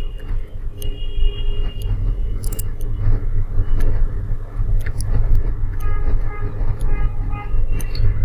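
Steady low background rumble with scattered faint clicks and a faint pitched sound late on.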